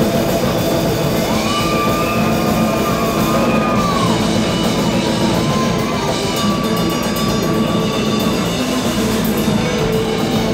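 Rock band playing loud with electric guitars and a drum kit. A high held note bends up and down through the middle.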